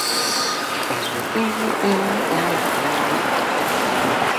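Elevated subway train running on the overhead tracks, with a high metallic wheel squeal in the first half second over a steady rush of train and street noise.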